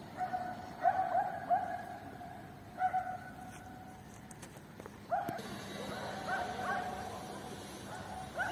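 A dog barking some way off, in short, sharp barks that come in bursts of two or three, with pauses between.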